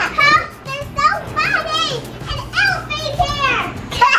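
Young children's excited, high-pitched squeals and cries without clear words, several rising-and-falling calls one after another.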